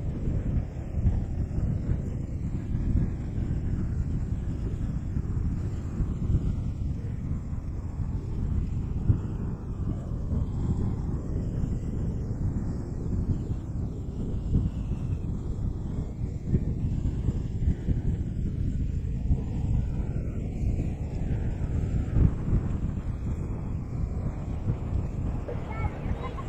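Gusty wind buffeting the microphone in a steady low rumble, over small waves washing against shoreline rocks.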